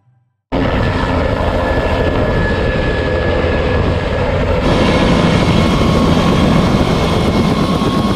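Helicopter running: a loud, steady rush of rotor and turbine noise with a faint steady whine, starting abruptly about half a second in.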